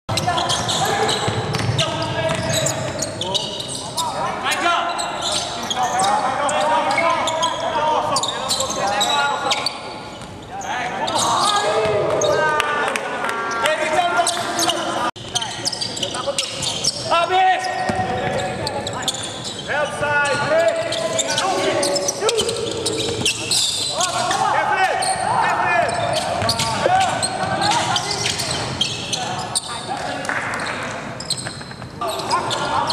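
Live court sound of a basketball game: a ball bouncing on the hardwood floor, with players' indistinct shouts and calls.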